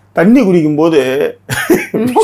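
A man speaking with lively rises and falls in pitch. About one and a half seconds in, his talk breaks into a short cough-like burst.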